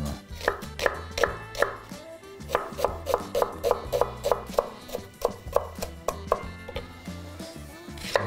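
A chef's knife dicing a white onion on a wooden chopping board: quick, even strokes of about four a second that stop shortly before the end, with background music under them.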